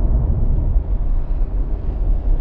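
Film-soundtrack explosion: the deep rumble of a huge fireball, steady and slowly easing off.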